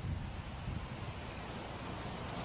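Faint steady background hiss with a low rumble underneath, even throughout, with no distinct event.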